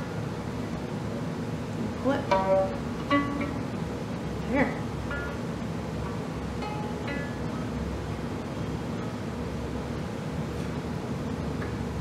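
Violin strings plucked by a small child's finger: a scattering of single pizzicato notes, several close together a couple of seconds in, then a few more sparsely until about seven seconds in, each ringing only briefly.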